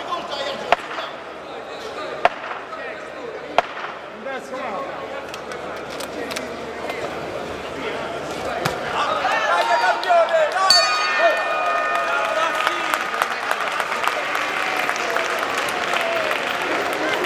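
Boxing arena crowd shouting and cheering, with a few sharp smacks of punches in the first four seconds. Near the eleventh second the ring bell is struck and rings out for about two seconds, marking the end of the round.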